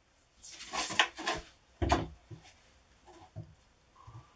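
A snowboard is handled and set down onto the end supports of a ski vise. There is sliding and rubbing for about a second, then a single dull thump just under two seconds in as the board lands. A few lighter knocks follow as it is settled.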